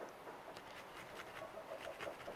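A garlic clove being grated on a small handheld metal grater: faint, repeated rasping strokes.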